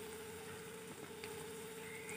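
Faint, steady sizzle of sliced onions and green chillies frying in oil in a kadai.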